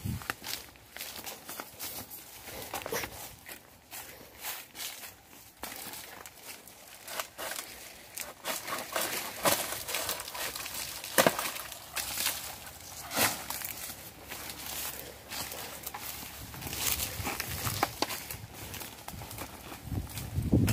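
Irregular rustling, crackling and knocking as a person moves through vegetation and handles a coconut palm's fronds and its bunch of coconuts, with a few sharper knocks about eleven and thirteen seconds in.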